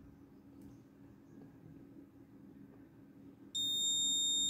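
Faint room tone, then about three and a half seconds in the project board's electronic buzzer alarm switches on with a steady, high-pitched tone. The alarm signals a temperature alert from the soldier health monitor.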